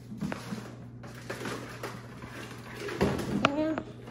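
Light knocks and rustling from handling inside a cabinet, over a steady low hum, with a short voice sound about three seconds in.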